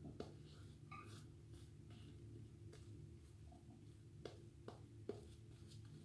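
Very faint swishing of a shaving brush working lather over the face, over a steady low hum, with a few soft clicks.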